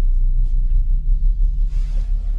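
Electronic intro jingle music dominated by a deep, steady bass rumble, with a short rushing swish near the end.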